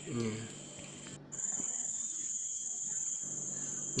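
Insects chirring in one steady high-pitched drone, which breaks off briefly about a second in and comes back louder.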